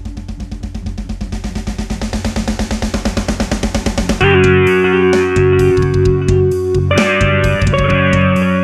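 Heavy instrumental music track: a fast drum roll builds in loudness for about four seconds, then a heavy guitar riff with kick drum and cymbals comes in suddenly.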